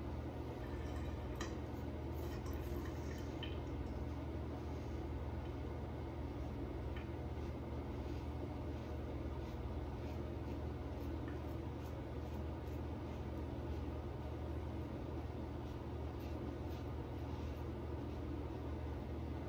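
Steady low hum in a small room, with faint, scattered scratching strokes of a razor cutting through lathered stubble.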